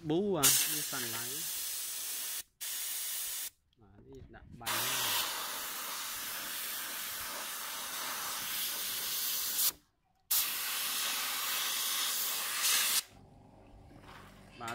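Compressed air hissing steadily from an air spray gun and hose, spraying water, in four long stretches broken by abrupt short gaps.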